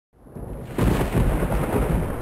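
Thunder: a rumble fading in, then a loud crack of thunder a little under a second in that keeps rumbling on.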